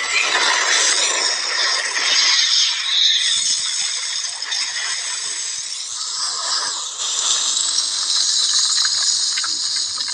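Film sound effects of a volcanic ash cloud and burning debris blasting through: a loud, dense rushing hiss and rattle that starts abruptly and briefly eases about six seconds in.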